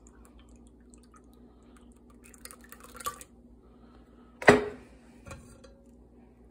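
Thick, slimy marshmallow-root infusion dripping and oozing through a metal mesh strainer into a measuring cup, with soft scattered drips and small clicks. A single sharp knock with a short ring comes about four and a half seconds in, then a smaller click.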